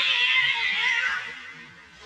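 Tabby cat giving one long meow, loud at first and fading out about a second and a half in.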